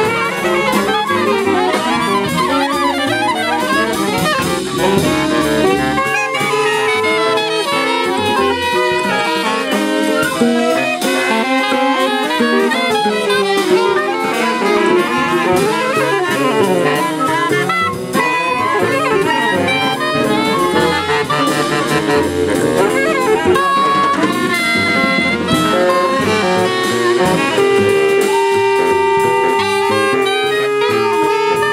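Free-jazz group improvisation by several saxophones, among them an alto and a baritone, playing dense, overlapping lines that move independently of each other. Near the end the horns settle into long held notes.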